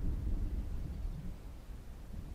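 Wind buffeting the microphone outdoors: a low, uneven rumble that swells and fades without any pitch.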